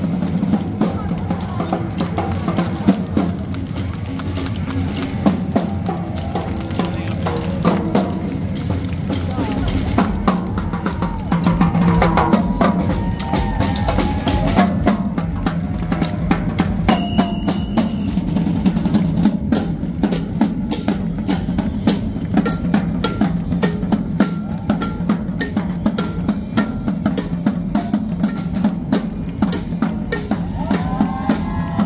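A marching percussion band of snare and bass drums playing a steady rhythm, growing louder and denser about ten seconds in, over background music and crowd voices.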